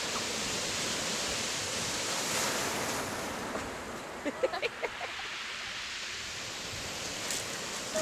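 Sea surf washing on a beach, a steady rush of breaking waves that swells about two seconds in. A short voice cuts in briefly about four seconds in.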